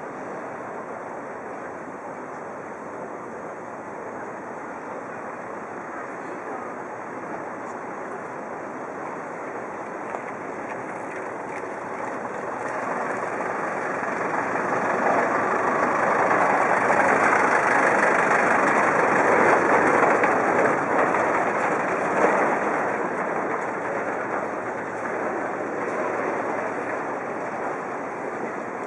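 Street noise of a vehicle passing: a steady outdoor rumble that swells over several seconds to a peak in the middle and then fades again.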